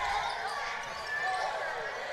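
Gym sound during live basketball play: faint crowd murmur and voices, with a basketball being dribbled on the hardwood court.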